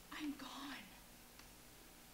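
A woman's voice: one short, soft phrase in the first second, too faint for words to be caught. Then low room tone with a faint tick.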